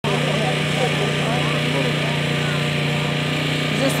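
A small engine running at a steady, unchanging speed, with people talking in the background.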